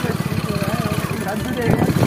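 Motorcycle engine running steadily while carrying six riders, an even low pulsing rumble, with people talking over it.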